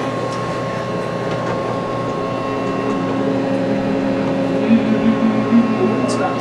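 Steady background hum and hiss. A low held tone joins about two seconds in, and a few soft wavering pulses come near the end.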